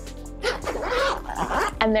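A small dog inside a soft-sided pet carrier gives a run of short pitched cries that bend up and down, from about half a second in until nearly two seconds, over background music.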